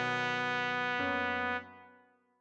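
Trumpet holding the final long note of the tune over a backing accompaniment. The low backing notes change about a second in, then everything fades out near the end.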